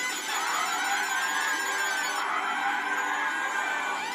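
An elf's cheering in the Santa video message: one long, high-pitched held shout over festive background music.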